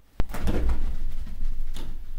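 A sharp click, then thuds and rustling twice as cats pounce and scramble onto a fabric play tunnel on carpet.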